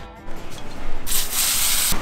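Garden hose spray nozzle spraying water over a cleaned-out blue crab. The spray starts about halfway through, runs for about a second and cuts off just before the end.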